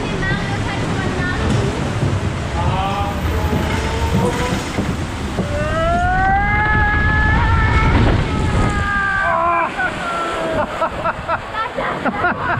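Riders screaming and whooping in long, rising cries as a log-flume boat plunges down its chute, over a steady low rush of wind and water.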